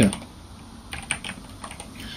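Computer keyboard keys clicking as a word is typed: a quick run of keystrokes in the second half.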